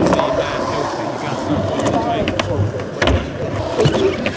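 Skateboard wheels rolling over concrete, a steady rough roll broken by a few sharp clicks and knocks from the board.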